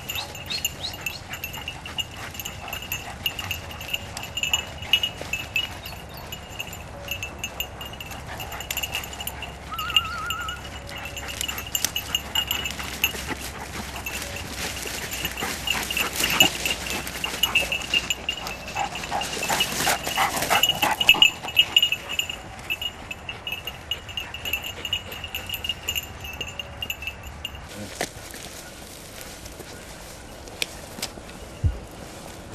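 A hunting dog's collar bell jingling without a break as the dog ranges through undergrowth, with brush rustling and crashing that is loudest from about 15 to 21 seconds in. The bell falls silent near the end.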